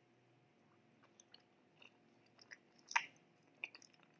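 Mouth sounds of biting and chewing a soft, sticky pandan mochi: scattered small clicks, with one sharp louder click about three seconds in and a few more near the end.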